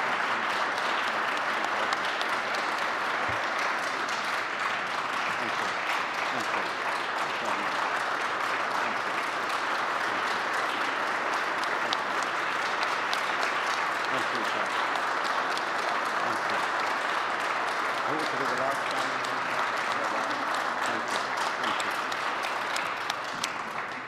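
A large audience applauding in a standing ovation: dense, steady clapping that holds for over twenty seconds and dies away near the end.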